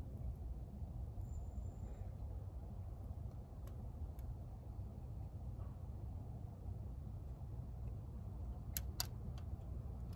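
Quiet outdoor background with a steady low rumble. A few soft clicks come from hands pulling apart tomato seedlings and their soil, two of them close together near the end.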